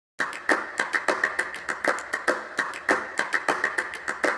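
A rapid, uneven run of sharp clicks, about five a second, each with a brief ring.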